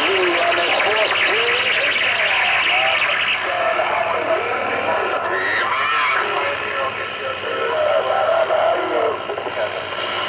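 CB radio receiving an incoming transmission: unintelligible voices through steady static hiss. The signal meter swings up to a strong reading.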